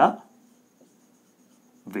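Whiteboard marker writing a word on the board, faint and scratchy, between bits of speech.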